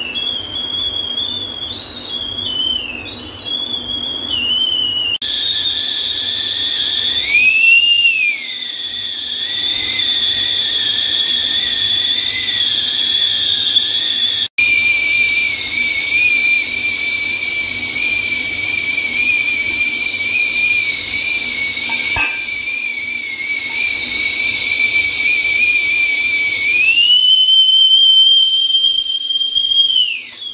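Whistle indicator of a Wonderchef stainless-steel double-walled milk boiler sounding loudly and continuously as the water between its walls boils. It is a single high, slightly wavering whistle that jumps in pitch a couple of times and rises again shortly before the end. It is the boiler's signal that it is on the boil, and it keeps whistling until the gas is turned off.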